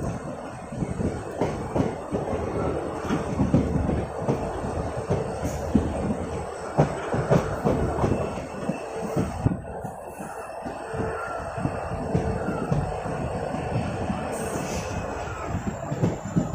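Passenger express train running at speed, heard from beside the coach: a steady rumble of wheels on the track with many irregular clattering knocks from the wheels and coach.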